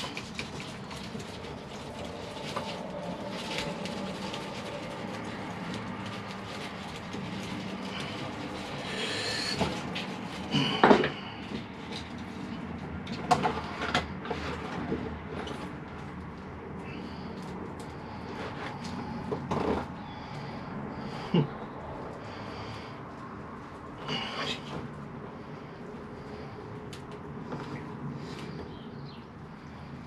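A hand tool and fingers scraping and tearing through a beech bonsai's root ball, soil and roots crackling as they are pulled free, with a few sharper knocks, the loudest about eleven seconds in.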